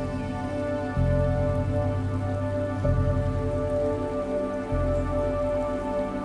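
Slow meditation music: sustained synth pad tones, with a deep low note that swells in again about every two seconds, over a soft, even, rain-like hiss.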